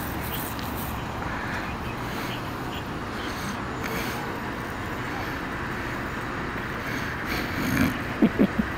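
Steady low outdoor background noise with faint, indistinct distant voices.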